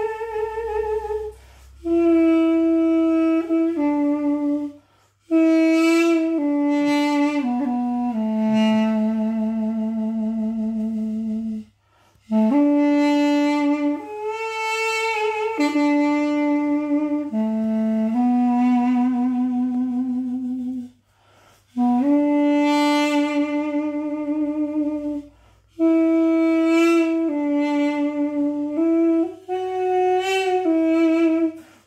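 Duduk in A playing a slow improvised Breton air: long held notes in phrases broken by short breath pauses, twice coming to rest on a long low A.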